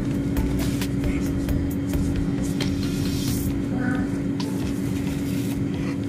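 A cotton pad rubbing on a plastic doll's face, with scratchy handling noise from a phone held close, over a steady low hum.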